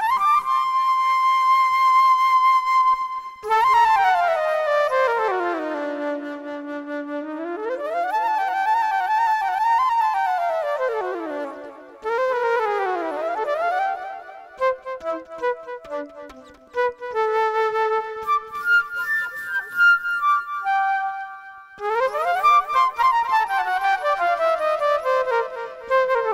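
Solo flute improvising. It opens on a held high note, then slides down and back up in wide, smooth pitch glides with vibrato. About halfway through it breaks into a run of short, quick notes, and the sweeping glides return near the end.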